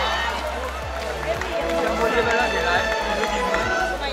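Spectators' voices and chatter in the stands over music playing held notes.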